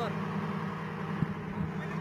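Armored military vehicle engine idling with a steady low hum, with a brief knock a little after a second in.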